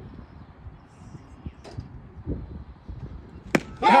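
A baseball pitch smacking into the catcher's mitt once, a single sharp pop near the end, over faint open-air background.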